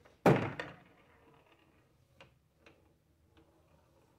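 One loud thunk from a coin-operated pinball slot machine as a ball is shot into the playfield, then three faint ticks as the ball strikes the pins on its way down.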